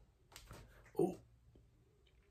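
A person's breathy exhale, then a short pitched vocal sound from the throat about a second in.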